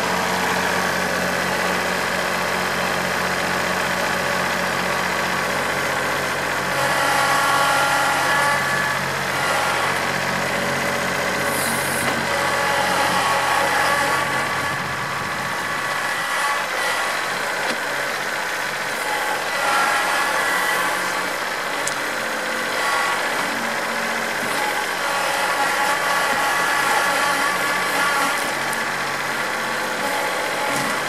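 Compact tractor engine running under load as the tractor moves in with its front loader to push over trees, the pitch and level rising and falling as it is throttled up about seven seconds in and again later.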